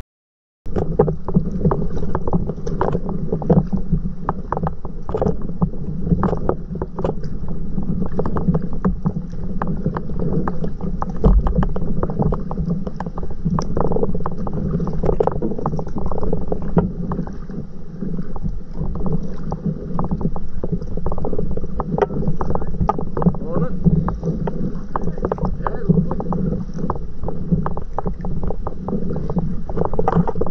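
Water splashing and lapping close to the microphone as a paddleboard moves along the river, with wind on the microphone. It is a dense, irregular crackle of small splashes over a steady low rumble, after a brief dropout at the very start.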